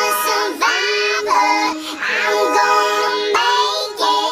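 High-pitched, childlike singing voices holding long notes over music.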